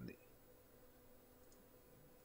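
Near silence: faint room tone with a steady hum, and a couple of faint computer mouse clicks.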